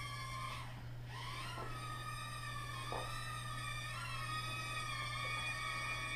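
Estes Proto X nano quadcopter's tiny motors and propellers whining in flight. The pitch wavers with throttle changes, dipping and rising again about a second in and once more near four seconds.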